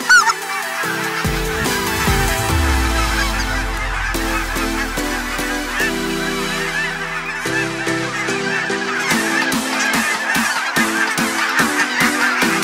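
A large flock of geese calling all at once, a dense clamour of honks, laid over electronic music with sustained synth chords and a deep bass drop about a second in; a drum beat comes in over the last few seconds.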